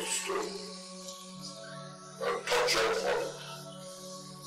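Steady background music with held tones. A dog barks in a short burst of a few barks a little past the middle, the loudest sound here, with a fainter sharp sound at the very start.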